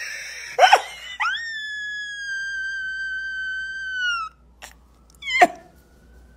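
A woman's short vocal burst, then one long, high-pitched squeal held steady for about three seconds that dips in pitch as it ends. Near the end comes a quick squeal that falls sharply in pitch.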